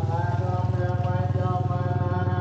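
An engine running steadily at an even, rapid pulse.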